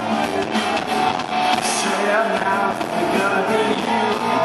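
Live band playing a pop-rock song, with strummed guitar carrying the rhythm and a steady beat.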